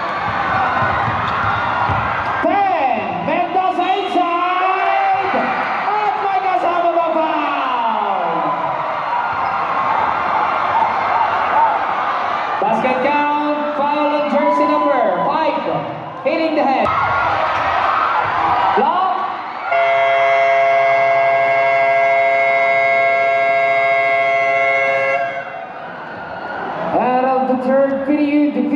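Gym crowd shouting and whooping during a basketball game, with a short horn blast about 13 seconds in. About 20 seconds in, the arena buzzer sounds one long steady note for about five seconds, marking the end of the third quarter.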